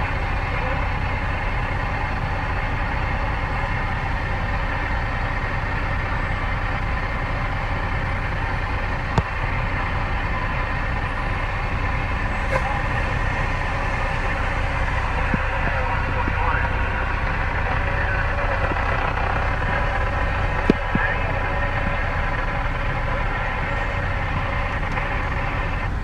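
Steady hiss of static from a CB radio's speaker with the squelch open, a little faint, unintelligible chatter under it, and the low hum of an idling truck beneath. A couple of brief clicks break in, about nine seconds in and again about twenty-one seconds in.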